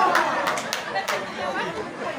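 Speech only: a man talking, with a few brief clicks.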